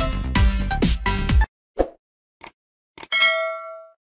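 Electronic intro music with a beat that cuts off abruptly about one and a half seconds in, followed by a few short clicks and then a bell-like ding that rings out for most of a second: the stock sound effects of a YouTube subscribe-button and notification-bell animation.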